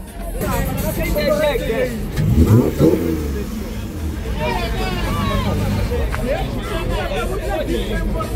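Crowd chatter over a steady car engine rumble. The engine revs up and back down once, briefly, about two and a half seconds in.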